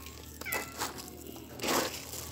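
A cat gives one short, high meow that falls in pitch about half a second in. Near the end, dry kibble rustles and patters as a handful is scooped and poured back into a bucket.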